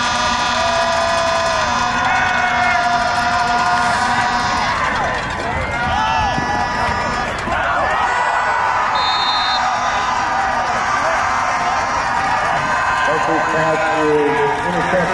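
Football stadium crowd shouting and cheering, many voices at once over long held tones, with the noise busiest in the middle.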